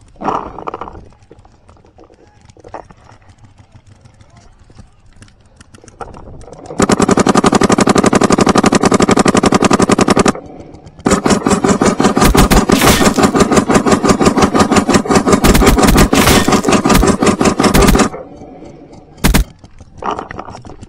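Planet Eclipse CS2 electronic paintball marker firing close to the microphone in two long rapid strings, one of about three and a half seconds and one of about seven seconds, with a short pause between, then a brief burst near the end.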